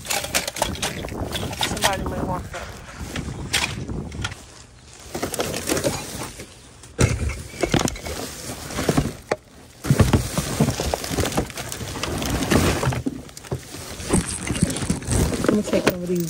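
Plastic trash bags rustling and crinkling as they are pulled and shifted inside a wheeled garbage bin, with irregular knocks against the bin, the loudest about seven and ten seconds in.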